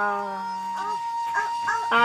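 Khặp Thái song: a long held sung note fades out about halfway through, then short melodic notes play over a steady high drone.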